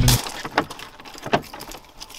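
Keys clinking in a camper van's door lock as it is unlocked, with two sharp clicks, about half a second and a second and a third in.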